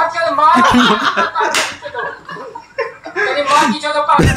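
Men laughing and chattering, with two sharp slap-like smacks, one about one and a half seconds in and another near the end.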